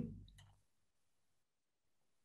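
Near silence: a man's voice trails off at the very start, and one faint click comes about half a second in.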